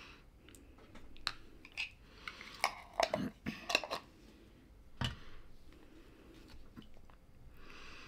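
Quiet chewing, then a series of sharp clicks and a few short soft shaking hisses from a pepper container as crushed white pepper is added to a bowl of ground-meat soup.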